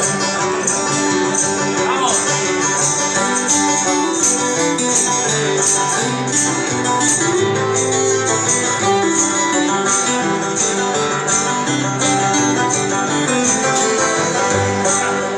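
Live acoustic band playing an instrumental passage in a country-bluegrass style: a picked banjo over strummed acoustic guitars, keeping a steady, even rhythm.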